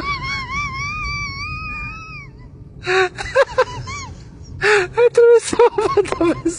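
A person's voice: a long, high, wavering call for about two seconds, then two short runs of quick vocal sounds without clear words.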